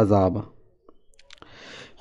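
A man's narrating voice ends a phrase, then a short pause with a few faint mouth clicks and a soft in-breath before he speaks again.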